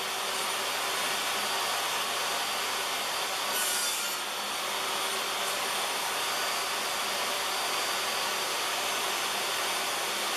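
DeWalt table saw running steadily while pine strips are crosscut on a sled, with a brief brighter hiss about three and a half seconds in as the blade goes through the wood.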